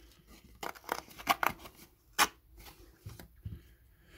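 Paper scratch cards being handled and shuffled on a table: a series of short, sharp card clicks and rustles, the loudest just after a second in and about two seconds in.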